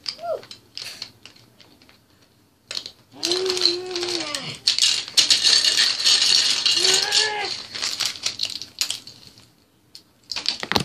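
Small plastic toy bricks clattering and rattling as hands rummage through a loose pile of them, sparse clicks at first and then a dense run of clatter from about three seconds in until near the end. A child's wordless vocal sounds come in briefly twice over the clatter.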